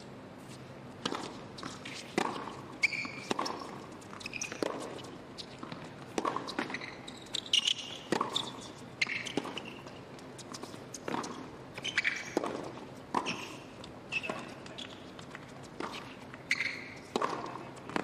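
A long tennis rally on a hard court: a tennis ball struck by racquets and bouncing, a sharp hit about every second, with short high squeaks from tennis shoes on the court surface.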